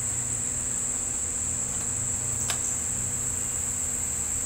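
Steady high-pitched drone of a chorus of insects, with a low hum beneath it. A single short click sounds about two and a half seconds in as the telescope's eyepiece fitting is handled.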